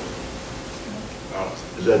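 A pause in a man's talk filled by steady background hiss, with his voice coming back near the end.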